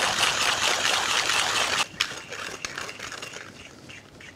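Hand burr grinder grinding coffee beans fine for espresso: a steady crunching as the crank turns, which drops off sharply about two seconds in to a lighter, sparser crackle that fades as the last beans go through the burrs.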